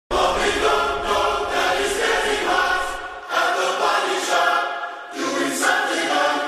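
Choir-like layered vocal harmony singing the slow opening hook of a pop song, with little or no beat behind it. It starts suddenly from silence and swells phrase by phrase, dipping briefly about halfway and again near the end.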